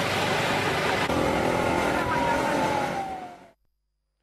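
Road traffic: cars driving past on a road, a steady rush of engines and tyres, with a thin tone falling in pitch near the end. The sound fades out about three and a half seconds in.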